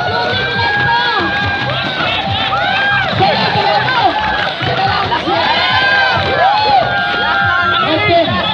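A crowd of many voices shouting and cheering at once, cheering on players racing in sacks.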